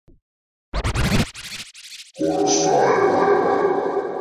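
Intro sting: after a short silence, about a second and a half of rough, scratchy noise bursts, then a held musical chord that sustains to the end.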